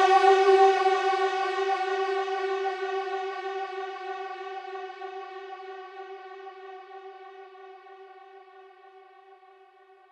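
One held synthesizer note, rich in overtones, slowly fading out: the closing fade of a psytrance track.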